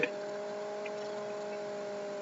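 Steady faint hum of a few level tones over a soft, even hiss: the background noise of the recording.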